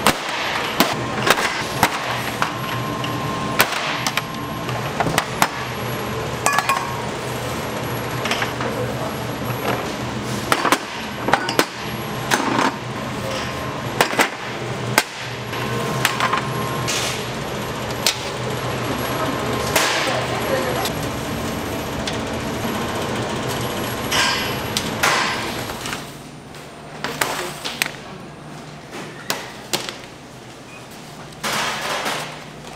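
Round metal cake tins clanking and knocking against a steel tray and worktop as baked sponge cakes are knocked out of them, with sharp irregular clanks over a steady machine hum. The hum drops away about four seconds before the end.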